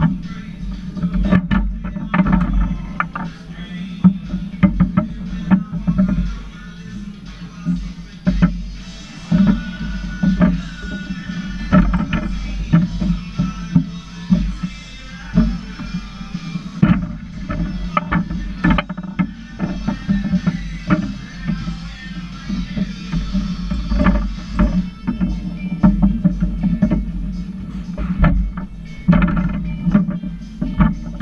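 Foosball play: the ball cracks off the plastic figures and the table walls, and the rods clack as they are spun and slammed, in irregular sharp knocks throughout. Music plays in the background.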